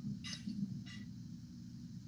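Faint, steady low hum of background noise, with two brief soft sounds about a third of a second and a second in.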